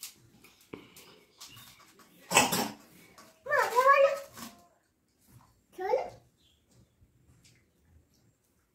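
A young child's high voice calling out with gliding pitch for about a second, three and a half seconds in, and again briefly near six seconds, without clear words. A loud, short noisy burst comes just before the first call.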